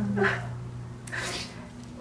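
A woman crying: a short whimpering sob at the start, then a sharp sniffling breath about a second in, over a steady low hum.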